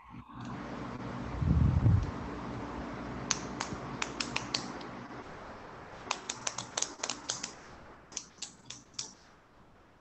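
Typing on a computer keyboard over an open call microphone: irregular key clicks in three short runs over a steady room hum, with a low thump about a second and a half in.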